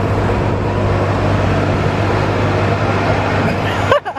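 A car engine running steadily close by, a constant low hum.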